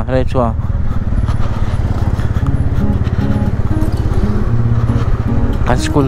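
TVS Ronin's single-cylinder motorcycle engine running steadily at low speed as the bike rolls through traffic, with a voice near the start and again near the end.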